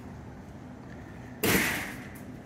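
A single sudden thump about one and a half seconds in, dying away over about half a second, after a stretch of quiet outdoor background.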